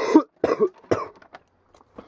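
A man coughing, about three short coughs in the first second.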